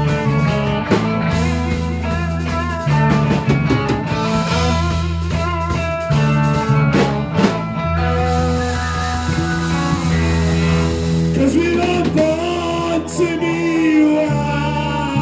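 Live rock band playing: electric guitars over a bass guitar and drum kit, with sustained bass notes and drum hits. A voice comes in singing near the end.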